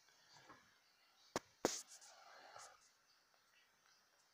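Mostly quiet room tone, broken by two sharp clicks about a second and a half in, followed briefly by faint whispering.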